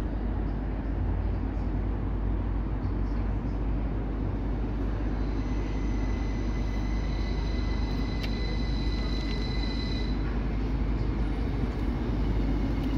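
Northern passenger train arriving at a station platform: a steady low rumble of the approaching train, with a steady high-pitched squeal from about five seconds in that stops about ten seconds in as it slows alongside.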